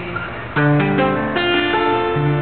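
Acoustic guitar strumming chords after the singing stops: a chord struck about half a second in and another past the middle, each left to ring.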